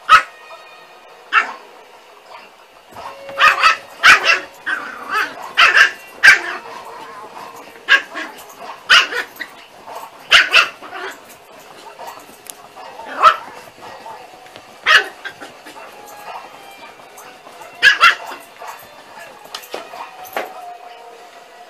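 A dog barking in short, sharp, loud barks, about fifteen of them at irregular intervals, several coming in quick pairs.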